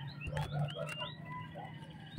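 Faint bird calls, short rising chirps and a few low clucks, over a low steady hum.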